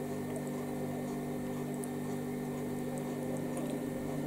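Steady electrical buzzing from a freezer, an unchanging hum of several pitched tones, with faint chewing sounds on top.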